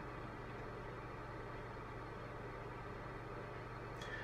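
Steady low hum with a faint hiss under it: the room tone of a small room picked up by the microphone.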